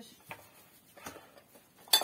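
Dishes and kitchen utensils clinking: a few light knocks, then one louder clatter with a short ring near the end.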